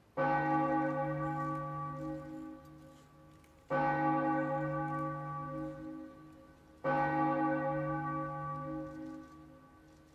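A low-pitched bell struck three times, about three seconds apart, each stroke ringing out and fading away. It is rung during the blessing with the monstrance at Benediction.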